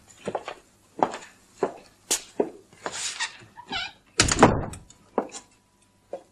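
Footsteps on a stage floor and a door being worked, a string of short knocks with one loud door thud about four seconds in.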